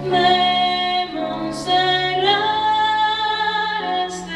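A woman's solo singing voice with piano accompaniment, holding long notes that change pitch about a second in and again a little past halfway, with a quick breath between phrases.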